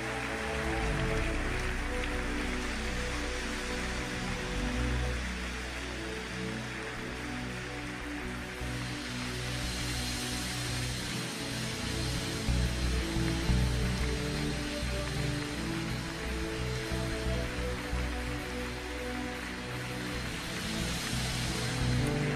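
Soft church music with long held chords, under the steady noise of a congregation applauding and cheering.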